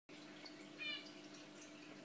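Faint steady low hum of a fish room full of running tanks, with one short high-pitched chirp about a second in.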